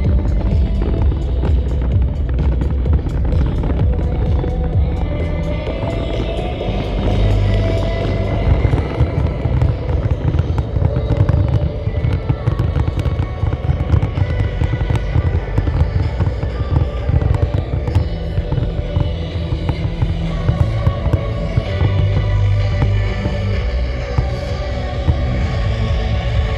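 Loud dance music with heavy bass, with fireworks bursting and crackling over it throughout in quick succession.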